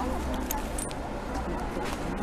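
Outdoor background noise: a steady low hum with faint voices and a few faint clicks.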